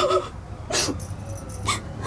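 A person crying between lines: about three short sobbing breaths, the first with a brief whimper of voice.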